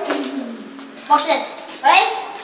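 Children's voices in short wordless vocal sounds, two brief bursts about a second in and near the end.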